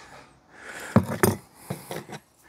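Handling sounds of cuttings and tools on a potting bench: soft rubbing, then a few sharp clicks and knocks from about a second in.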